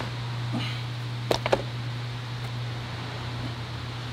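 Audi TT RS plastic engine cover being pulled up off its mounts: a sharp click as it starts to lift, then a couple more clicks about a second and a half in as it comes free, over a steady low hum.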